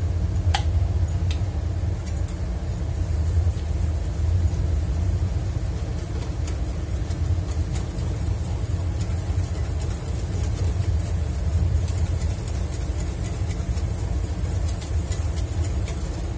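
Steady low machine hum or engine-like drone running throughout, with a couple of faint clicks in the first couple of seconds.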